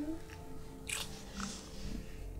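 Kissing: short wet lip smacks and breaths, two brief ones about a second in.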